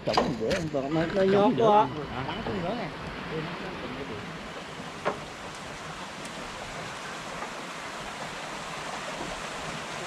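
Men's voices calling for the first two seconds, then a steady rush of wind on the microphone with one sharp tap about five seconds in.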